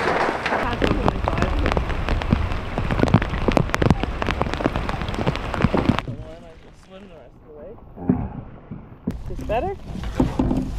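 Heavy steady rain, dense drops pattering close to the microphone. About six seconds in it cuts to a quieter stretch with faint voices.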